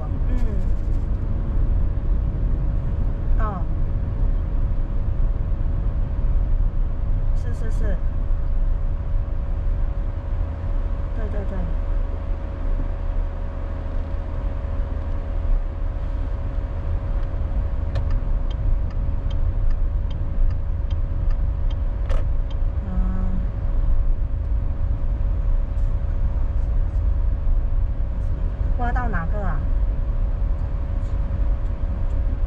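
Car driving in city traffic, heard from inside the cabin: a steady low rumble of road and tyre noise with a constant hum over it. For a few seconds in the middle there is a light ticking about twice a second.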